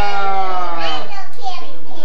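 Children's voices: one long drawn-out voice sliding slowly down in pitch, ending about a second in, followed by brief child chatter.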